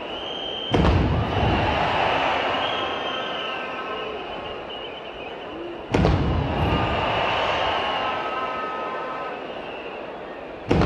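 Ceremonial artillery gun salute: two cannon shots about five seconds apart, each a sudden loud boom with a long rolling decay. Steady sustained tones run underneath.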